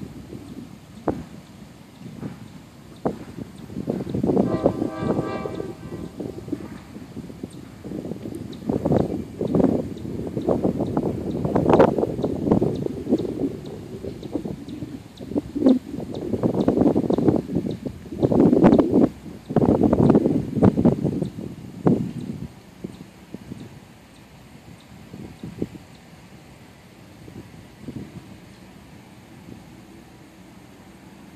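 Passenger train rolling slowly toward the microphone, pushed by its diesel locomotive, with uneven loud rumbles that come and go through the middle and die down over the last several seconds.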